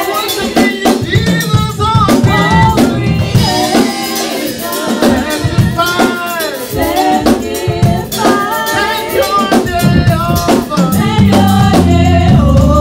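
Live gospel praise-and-worship song: a male lead singer and female backing singers singing over a band with drum kit. The band gets louder and fuller near the end.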